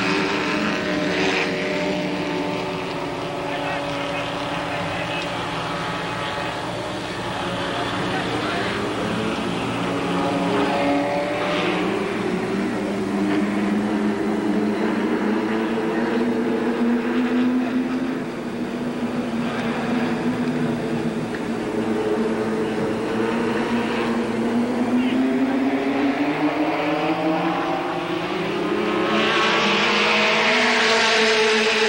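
Engines of a pack of late model stock cars running together, their pitch sinking through the middle and climbing again over the last few seconds as they speed up.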